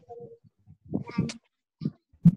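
A child's voice coming through a video call, short and garbled, with silent gaps between the bits.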